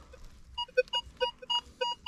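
Metal detector giving a quick run of short, identical pitched beeps, several a second, as its coil is swept back and forth over a buried target to read it.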